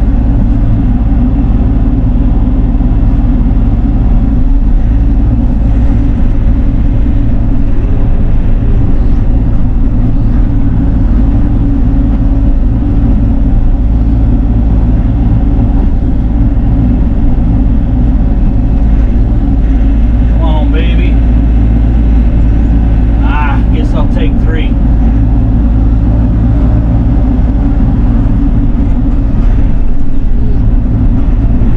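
Bobcat E42 mini excavator's diesel engine and hydraulics running steadily under load, heard from inside the cab, as the machine grabs and lifts stumps with its bucket and thumb. Twice, about two-thirds of the way in, a brief higher wavering sound cuts through.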